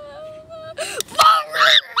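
A person's voice holding one long, steady wailing note, which breaks off about halfway through into loud, gasping laughter, with two sharp clicks among the laughs.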